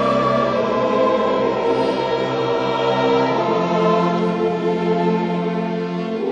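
A mixed choir singing a sustained classical passage with a string orchestra. Near the end the choral sound breaks off and the strings carry on.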